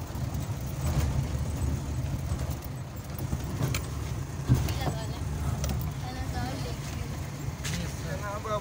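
Jeep engine running with a steady low rumble, heard from inside the cab as it drives over a rough gravel track, with scattered rattles and knocks from the jolting vehicle.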